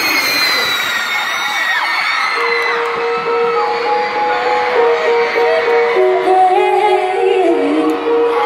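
Arena crowd screaming and cheering, heard from among the audience, as live pop music begins. Long held notes of the song's slow introduction come in about two seconds in.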